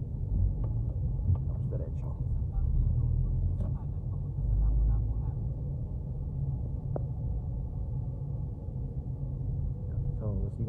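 Low, steady rumble of a car's engine and tyres heard from inside the cabin while it drives slowly. The rumble swells for a moment midway.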